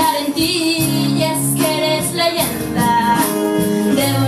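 A singer performing a pop song over a backing track with a steady beat and held bass notes.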